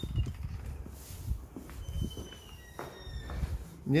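Footsteps and phone-handling rumble from someone walking while filming, with irregular low thumps. In the middle, a few faint thin high tones sound together for about a second and a half.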